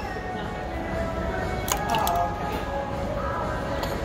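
Ear-piercing gun firing with a sharp click about a second and a half in, over steady background music.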